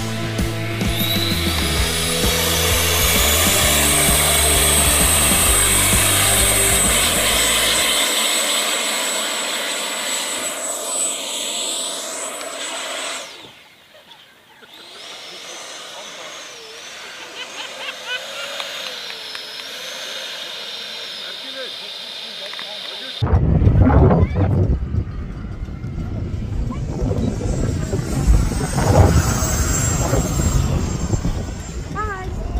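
Rock music at first, under the high whine of a radio-controlled jet's 70 mm electric ducted fan rising in pitch as it spools up, then holding steady. After a brief dip the fan's whine goes on quieter, wavering up and down in pitch as the model runs across the water and climbs away. A sudden loud low rumble sets in about three quarters of the way through and carries on to the end.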